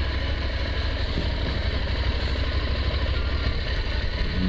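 Motorcycle engine running steadily at low revs as the bike rolls along slowly, its low hum under a steady haze of wind and road noise.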